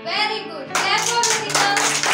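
A group of young children clapping their hands, breaking out about three-quarters of a second in after a child's voice.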